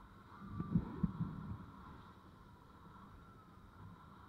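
Faint, steady running sound of a motorbike in motion, heard with some wind on the microphone. About a second in come two sharp low thumps in a short burst.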